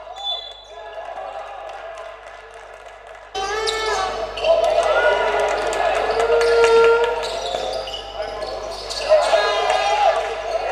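Basketball game sound in a sports hall: a ball bouncing on the court amid players' voices. It becomes suddenly louder about three and a half seconds in, where the footage cuts to another game.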